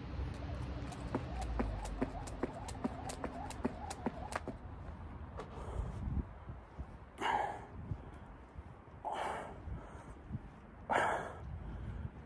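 A man's forceful breaths, one about every two seconds, as he does crunches on a bench. In the first few seconds there is a quick run of light clicks.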